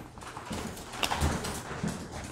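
2021 Topps baseball cards being handled and slid one at a time off a stack in the hands: a few soft taps and rustles of card stock.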